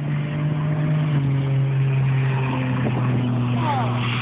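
A car engine droning steadily, its pitch dropping slightly about a second in. A man's voice comes in near the end.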